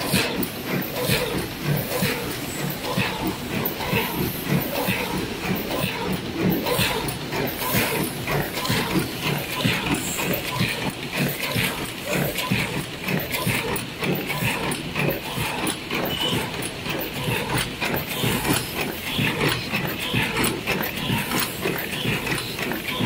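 Paper cup forming machine test-running at about 68 cups a minute: a steady, dense clatter of rapid mechanical clicks from its indexing turret and moulds.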